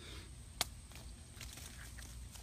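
Quiet outdoor background with a single sharp click a little before the middle.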